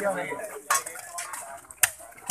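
Metal hoe blades striking and scraping into soil and stones, with two sharp hits, one under a second in and one near the end.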